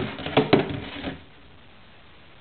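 Empty plastic gallon milk jug knocking and sliding on a wooden floor: a few hollow knocks in the first second, then quiet room tone.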